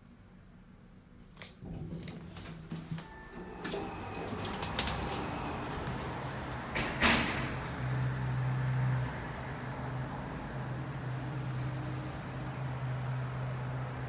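Elevator sliding doors opening after the door-open button is pressed: a low steady hum from the door operator with clicks and rattles from the door hangers and gear. There is one sharp click about seven seconds in, and the hum grows louder and holds through the second half.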